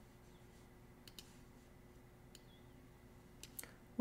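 Near silence with a few faint computer mouse clicks: two in quick succession about a second in, one a little past the middle, and two more near the end, made while painting a mask with a brush tool.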